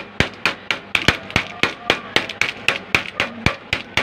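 Wooden rolling pin pounding sealed packets of Skyflakes crackers on a stone tabletop, crushing the crackers inside. Sharp, rapid knocks at a steady pace of about four a second.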